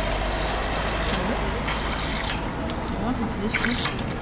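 Water running from a public street drinking-water tap into a plastic bottle, a hiss that breaks off about a second in, comes back briefly and stops a little after two seconds, over a steady traffic rumble.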